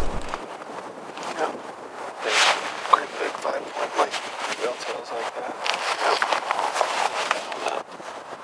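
Hushed, low voices of people talking quietly in short broken phrases, with no clear words.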